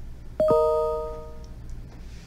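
A computer notification chime: a quick falling two-note ding-dong about half a second in, which rings out and fades over about a second. It sounds as the phone number is sent in the support web chat.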